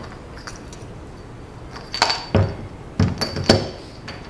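Flashlight batteries being handled and tipped out of the flashlight's tube: a few sharp metallic clinks and knocks, starting about two seconds in, some with a short high ring.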